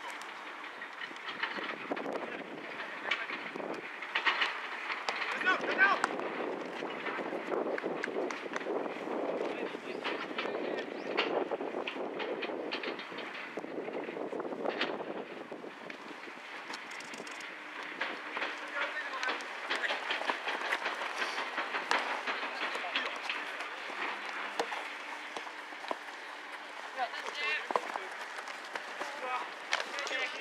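Players' voices calling out across an outdoor football pitch during play, over a steady background haze, with occasional short knocks.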